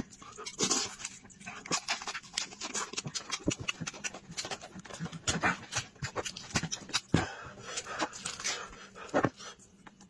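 Close-miked eating of a braised sheep head: meat pulled from the bone, wet chewing and lip-smacking, with many sharp clicks. A dog's panting and whimpering runs underneath.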